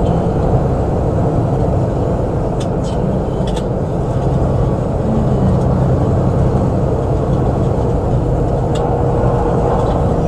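Steady road and engine noise inside a moving vehicle's cabin at freeway speed, a constant low rumble with a faint hum. A few faint clicks are heard around three seconds in and again near the end.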